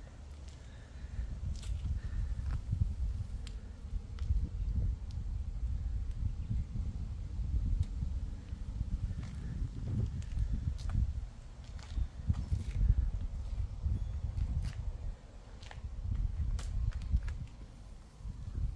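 Footsteps on pavement with an uneven, low wind rumble on the microphone and a few faint clicks.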